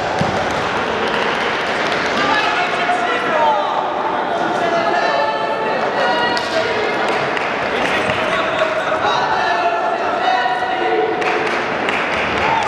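Crowd hubbub in a large sports hall: many voices overlapping and calling out at once, with a few dull thuds among them.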